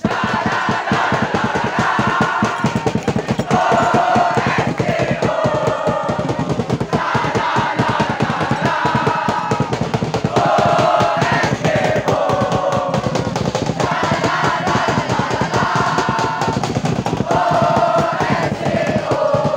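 A cheering squad of students chanting in unison in short, repeated phrases, over a fast, steady drumbeat.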